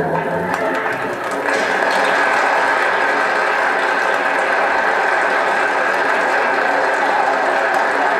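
Loud crackle and hiss of a shellac 78 rpm gramophone record's surface noise, played on a Rigonda valve radiogram, in a gap between musical numbers. The last notes of the previous piece fade out in the first second or so.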